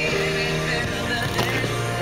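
Rock music playing, with sustained notes.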